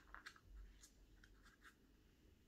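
Faint, short scratchy clicks, about seven scattered through two seconds: a Chihuahua's claws skittering on a laminate floor as it pounces around a plush toy.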